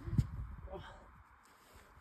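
A brief knock near the start, then a softly spoken 'yeah' just under a second in. The rest is near silence.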